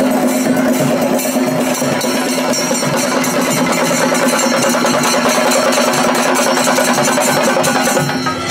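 Chenda drums beaten in a dense, fast, continuous roll, loud and even, with a steady drone underneath.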